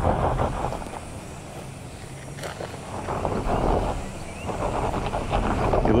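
Chevrolet Silverado ZR2 Bison pickup's engine running under light throttle as it creeps up a loose gravel and rock hill in two-wheel drive, with wind buffeting the microphone.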